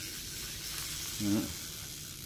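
Spinning fishing reel being cranked by hand, its rotor and gears giving a steady, even whirring hiss.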